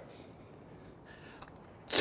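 Quiet background ambience with no distinct event, just after a golf shot.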